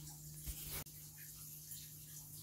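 Faint room tone: a steady low hum under a soft hiss, with a brief soft rustle that ends in a sharp click a little under a second in.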